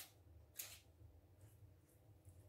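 Near silence, with a few faint soft rustles, the clearest about half a second in: a silicone basting brush spreading barbecue sauce over ribs in a foil-lined dish.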